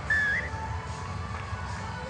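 A short whistle near the start that rises slightly and then wavers, over faint steady background music.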